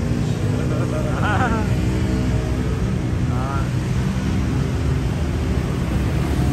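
Steady rumble of street traffic, with faint engine hum, and brief distant voices twice.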